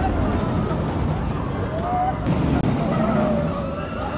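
Inverted steel roller coaster train running along the track overhead, its rumble swelling about two seconds in, with people's voices and yells wavering over it.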